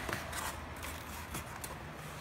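Cardboard book mailer being unfolded by hand: a few short rustles and scrapes as its flaps are bent back.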